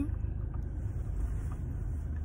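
Steady low rumble of a moving car, engine and road noise, heard from inside the cabin.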